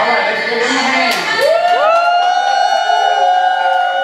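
Children cheering and shouting, breaking into a long held yell of several voices from about halfway through.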